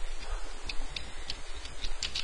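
Computer keyboard typing: a quick run of irregular key clicks.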